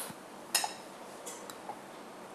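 A few light clicks and clinks of a kitchen utensil against a dish as truffles are dipped in melted chocolate and set on a plate, the clearest about half a second in.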